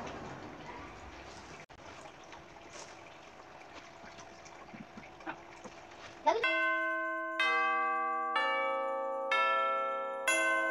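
Low room noise with faint handling sounds, then about two-thirds of the way in a bell-toned music track starts. Its notes come about once a second, each ringing out and fading.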